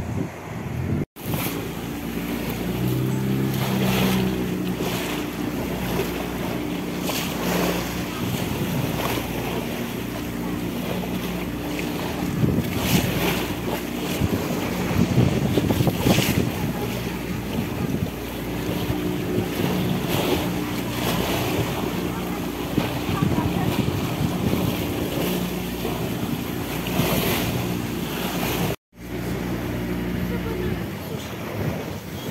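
A small motorboat under way: the engine runs steadily under the rush and splash of water along the hull, with wind on the microphone. The sound drops out briefly twice, about a second in and near the end.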